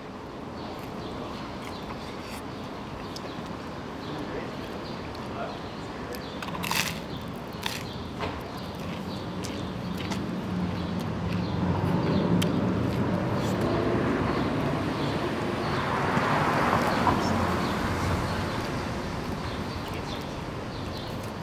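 Outdoor street ambience with people nearby murmuring and whispering, growing louder through the second half, and a sharp click about seven seconds in.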